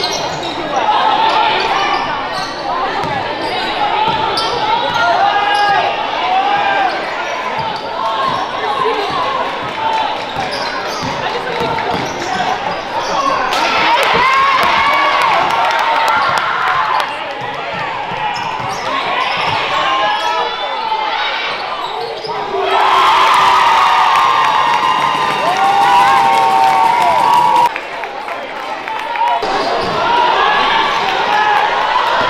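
A basketball dribbled on a hardwood gym floor, with sneakers squeaking during game play and voices from the players and crowd in the hall. The sound changes abruptly twice near the end where the footage is cut.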